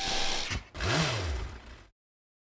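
Sound effect of a LEGO camper van turning on its stand: two bursts of mechanical noise, the second with a low tone that rises and falls, cut off suddenly just before the end.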